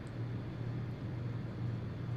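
A steady low hum with a faint even background noise; no speech.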